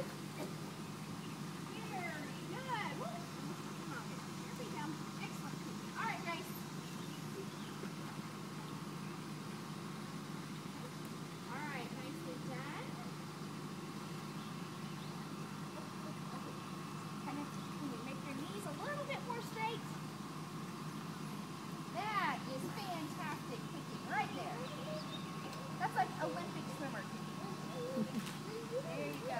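Faint voices calling out now and then, over a steady low hum.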